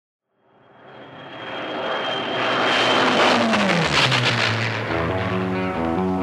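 An aircraft engine fades in and builds to a loud fly-past, its note falling in pitch as it passes. Music comes in near the end.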